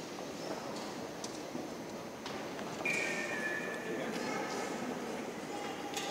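Murmur of spectators in a boxing hall, with a few faint knocks. About three seconds in, a high-pitched sound rises above the crowd for about a second, dropping slightly in pitch.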